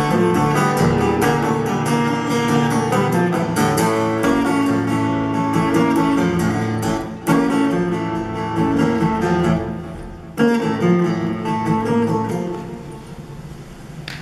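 A solo acoustic guitar strums and picks chords in an instrumental passage, with hard strums at about seven and ten seconds in. These are the song's closing bars, and the guitar dies away near the end.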